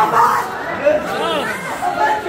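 Overlapping voices: several people talking and calling out at once.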